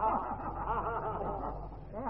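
Many voices overlapping softly: the gathered audience murmuring and chuckling, over the steady low hum of an old tape recording.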